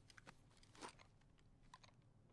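A few faint, sharp clicks over near silence, the strongest just under a second in and two close together near the end.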